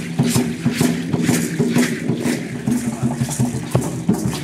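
Rhythmic shaking of dance rattles with drum beats, about two strokes a second, over a steady low-pitched drone.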